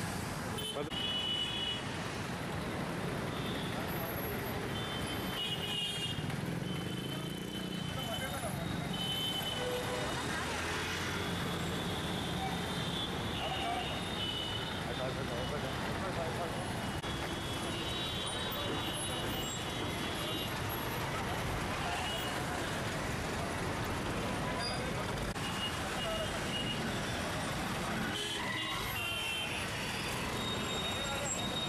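Steady city street traffic: motorcycles, scooters and auto-rickshaws running past at a junction, with several short high-pitched beeps at intervals.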